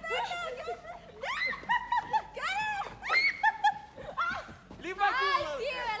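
Several people laughing and shrieking, with high, swooping voices and no clear words throughout.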